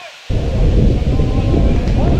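Wind buffeting the camera's microphone: a loud, low rumble that starts suddenly about a quarter of a second in and carries on.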